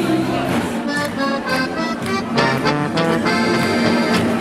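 Accordion music playing a lively tune of quick changing notes, settling into a long held chord near the end.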